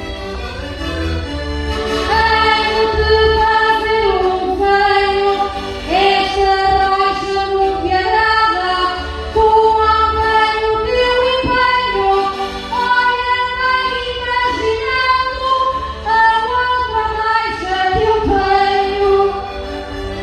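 A woman singing a verse of a Portuguese desgarrada (cantares ao desafio, sung challenge verses) through a microphone over steady instrumental accompaniment. Her line comes in about two seconds in with long held, wavering notes.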